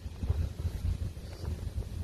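Wind buffeting a handheld microphone outdoors: a low, irregular rumble that rises and falls.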